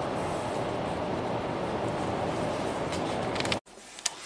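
Steady in-cabin road and engine noise of a 2016 Dodge Grand Caravan with the 3.6 Pentastar V6, cruising on a test drive and running smoothly after its cam timing repair. The sound cuts off suddenly near the end.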